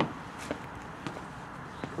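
Quiet background noise with a few faint, light taps or clicks scattered through it.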